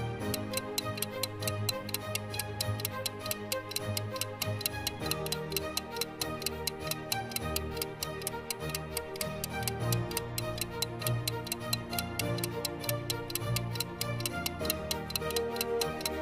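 Clock-ticking sound effect, fast and even, counting down a puzzle timer, over soft background music with sustained low notes. The ticking starts and stops abruptly with the timer.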